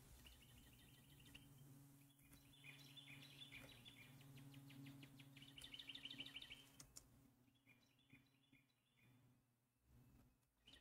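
Near silence: faint, rapid bird-like chirping in the background in a few short runs, over a low steady hum.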